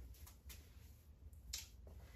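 Near silence with a few faint clicks and rustles of a nylon swimsuit being unfolded and handled, the clearest about a second and a half in.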